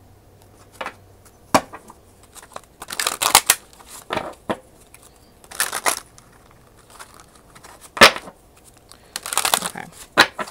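A deck of tarot cards being shuffled by hand: a run of short, irregular rustling bursts of cards sliding and riffling, with one sharp knock about eight seconds in that is the loudest sound.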